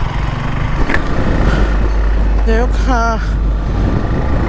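Suzuki Gixxer SF single-cylinder motorcycle running while it is ridden in traffic, picking up speed. A steady low wind rumble on the microphone runs under it.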